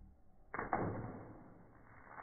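A water balloon bursts on a head with a sudden hit about half a second in, then a rush of splashing water fades over about a second. A second wash of splashing noise comes near the end.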